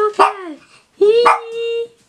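Small terrier-type dog vocalizing: a short cry with falling pitch at the start, then a long steady howl-like whine held for about a second, starting about a second in.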